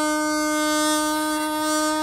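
A long bamboo wind pipe playing one long, steady held note.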